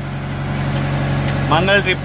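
Fishing boat's engine running with a steady low drone, heard from inside the wheelhouse. A voice speaks briefly near the end.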